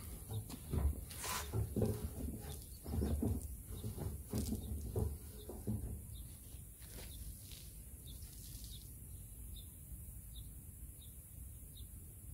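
Wet chenille microfiber wash mitt scrubbing over a soapy car fender, with irregular scuffs and a couple of sharp knocks as the panel is handled, in the first half. After that it goes quieter, with faint short bird chirps.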